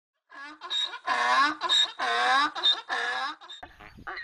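A donkey braying, hee-haw: short high notes alternating with longer, lower notes, about three times over, trailing off into weaker calls near the end.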